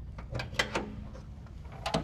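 Hood latch and hinges of a 1970/71 Honda Z600 clicking and creaking as the hood is released and lifted. There are several light clicks in the first second and a louder clack near the end.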